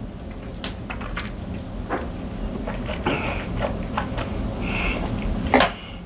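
Quiet mouth sounds of tasting cognac from tulip glasses: sipping and swallowing, with scattered small clicks and lip smacks and a couple of short breathy sounds about three and five seconds in.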